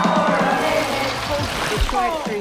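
A live pop song with a steady kick-drum beat over crowd noise. The beat thins out about a second in and the music fades.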